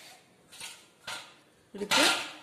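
Mostly quiet kitchen room tone with two faint, brief rustles, then a short burst of a person's voice just before the end.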